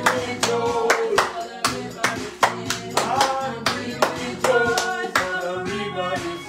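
A gospel worship song sung by several voices, with steady hand clapping on the beat, about two to three claps a second.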